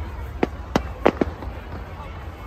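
Fireworks bursting: four sharp cracks in under a second, the last two close together, over a steady low rumble.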